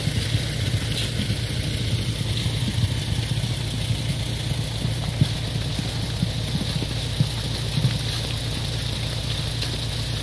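Concrete mixer truck's diesel engine running steadily while the drum turns, with wet concrete sliding down the discharge chute as a steady hiss over the engine's low running.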